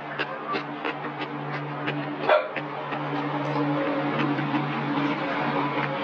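Background music with steady held notes under mouth sounds of eating wontons in chili oil: quick wet smacks about three a second early on, and one loud slurp a little over two seconds in.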